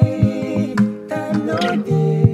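Acoustic guitar and keyboard playing a slow song accompaniment, with a voice humming a wavering melody along with it.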